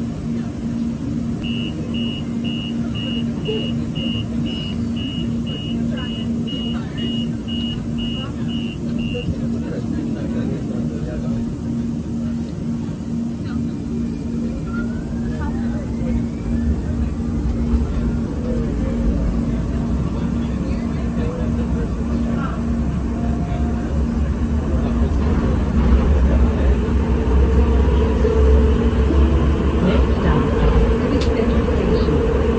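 Muni Metro Siemens S200 light-rail train pulling into an underground station, its deep low rumble building from about halfway through and growing louder toward the end. Under it runs a steady, repeating low pulsing tone, and in the first third a quick run of high beeps.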